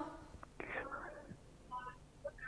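A faint, low voice speaking in short snatches with pauses between.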